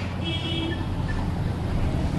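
Steady low background hum and rumble in a pause between words, with a faint high tone heard briefly a quarter of a second in.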